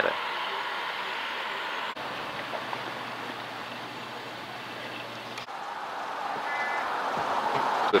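Outdoor street background noise: a steady rushing hiss, with a faint low hum in the middle, that swells toward the end.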